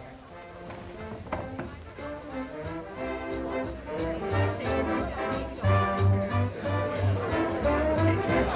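Dance-band music with brass, growing louder about halfway through, with a steady bass beat.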